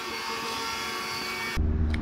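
Electric roller shutter garage door motor running as the shutter rolls up: a steady whine made of several steady tones. It cuts off about one and a half seconds in, giving way to a low rumble.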